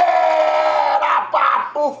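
A man's loud, drawn-out shouted vowel, held on one slightly falling pitch for about a second, then breaking into a few short syllables.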